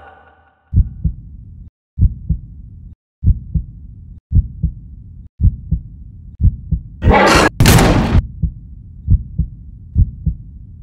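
Heartbeat sound effect: low double thumps, lub-dub, about once a second. About seven seconds in, two loud hissing whooshes cut across it.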